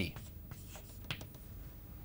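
Chalk writing on a blackboard: a few short, faint scratches and taps in the first second or so.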